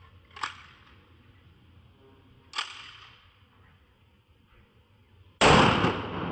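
Two pistol shots about two seconds apart, each cracking sharply and dying away in a short echo, followed near the end by a much louder sudden noise that carries on.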